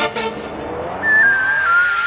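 Grime instrumental at a build-up: the drums stop, and a rising sweep swells with a growing hiss. From about a second in, a high squealing tone slides down in steps.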